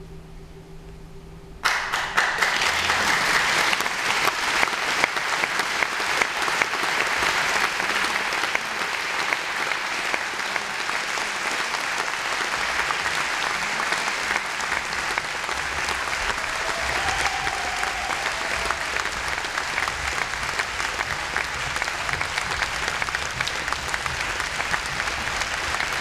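A quiet hum, then about two seconds in a large concert-hall audience starts applauding all at once, and the applause holds steady and dense from then on.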